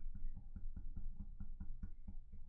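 A rapid, fairly even run of soft, dull knocks, about six a second, close to a microphone: tapping at a desk.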